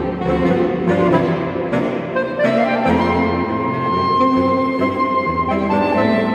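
Saxophone quartet playing: several saxophones sound together over a moving low line. About two and a half seconds in, a high saxophone slides up into a long held note.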